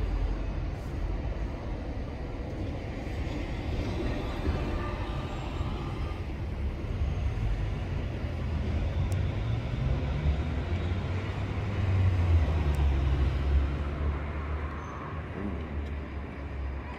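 Low rumble of road traffic, with a vehicle's engine building up and loudest about twelve seconds in before fading.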